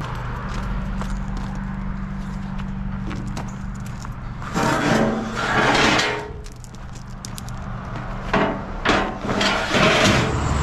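Footsteps crunching on gravel in a few short bursts, about halfway through and again near the end, over a steady low hum.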